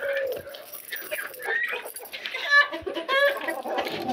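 Chickens clucking and giving short high-pitched calls inside a wire-mesh cage, with a few light metallic clicks from the cage door's latch being opened.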